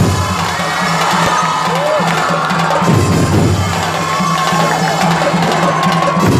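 Performance music with a steady held low drone, over a large crowd cheering and shouting.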